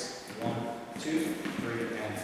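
Speech: a man's voice counting the dance beats aloud.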